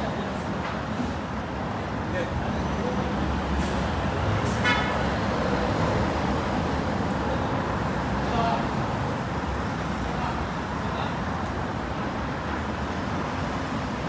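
Steady city road traffic noise from passing cars and buses, with a short car horn toot about four and a half seconds in.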